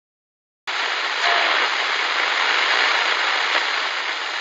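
Steady hiss of television static from an animated intro, starting abruptly just over half a second in.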